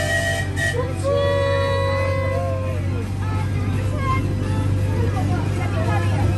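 Miniature park railway train running, with a steady low engine drone as it moves off, and held pitched calls over it, the longest about a second in.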